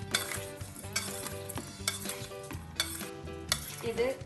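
A metal spoon stirring chopped lime pieces in a stainless steel bowl. A handful of sharp clinks and scrapes of the spoon against the steel come over a soft, wet mixing sound.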